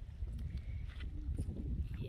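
Wind buffeting the phone's microphone, a steady low fluttering rumble, with faint scattered knocks over it.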